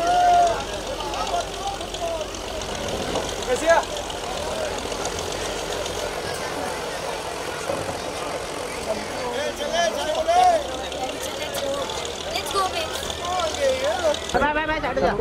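Several people talking at once, with voices rising and falling throughout, over a steady low engine hum.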